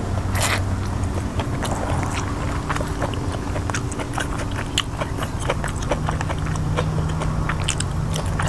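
Close-up chewing and wet mouth clicks of a person eating sticky rice with a pork-and-vegetable curry, many small irregular clicks throughout. A low steady hum runs underneath, shifting in pitch about six seconds in.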